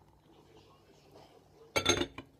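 Quiet kitchen room tone, then near the end a quick pair of sharp metallic clinks with a short ring, from stainless steel cookware being knocked together.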